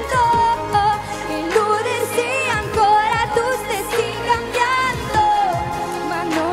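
Live pop music: a woman sings long, wavering held notes into a microphone over a band with drums.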